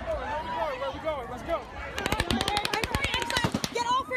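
Long burst of rapid automatic gunfire starting about halfway through, the shots coming in quick succession, with panicked voices of a crowd before and under it.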